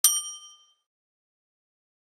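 A single bright bell-chime sound effect as the notification bell of an animated subscribe button is clicked: one sharp strike that rings out and fades within about a second.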